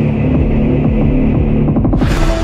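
Channel intro music: a loud, low throbbing drone with the treble filtered away, pulses building and quickening in the second half.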